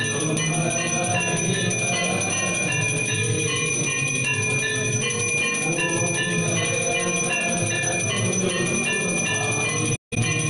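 Temple bells ringing rapidly and without pause for the aarti, many overlapping strikes at several pitches blending into one dense, sustained ring.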